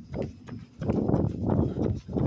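A runner's footfalls and breathing in a quick, steady rhythm, picked up close by a phone carried while running. It grows louder about a second in.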